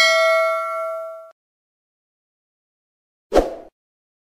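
Notification-bell 'ding' sound effect from a subscribe-button animation: one bright bell chime that rings for about a second and stops abruptly. A short burst of noise follows a little over three seconds in.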